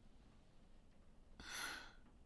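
A woman's sigh: one breathy exhale lasting about half a second, starting about one and a half seconds in, against near-silent room tone.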